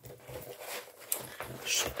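A fabric zippered pencil case full of coloured pencils being picked up and handled, with rustling and a few light knocks of the pencils inside.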